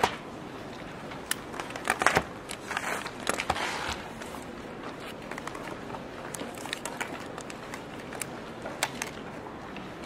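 Room noise in a lecture room: scattered small clicks and knocks with rustling, busiest about two to four seconds in.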